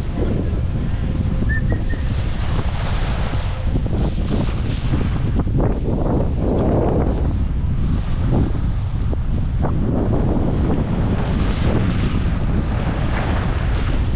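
Wind buffeting the microphone of a skier-worn camera, with skis hissing and scraping over groomed snow on a downhill run; a steady, loud rush that swells and eases as the skier turns.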